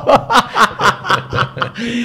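A man laughing in a quick run of short chuckles, about four or five bursts a second.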